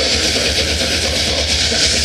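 Death metal band playing live: heavily distorted electric guitars and bass over fast drumming, a dense, continuous wall of sound.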